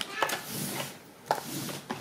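Cardboard and plastic multipacks of yogurts and desserts being handled and set down on a table, a few light knocks with some rustling in between.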